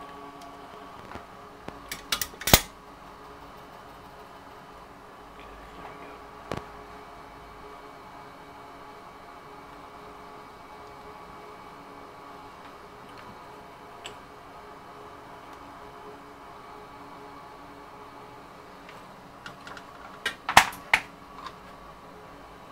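Steady hum of a small bench fan running, with a few sharp clicks and taps of hand tools on the workbench: a cluster about two seconds in and another near the end.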